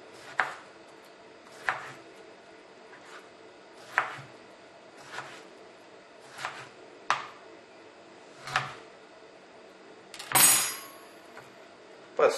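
Kitchen knife slicing through a soft fermented stuffed eggplant and knocking on a plastic cutting board, one cut every second or so, about eight in all. Near the end comes a longer, louder scrape as the slices go into a ceramic dish.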